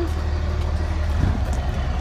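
Heavy-duty pickup truck engine idling: a steady low rumble.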